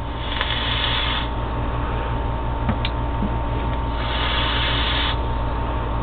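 A long draw on a sub-ohm rebuildable dripping atomizer (0.38 ohm coil) fired at about 60 watts, then the vapour breathed out: a steady airy hiss, louder at the start and again about four seconds in with the exhale, over a steady low hum.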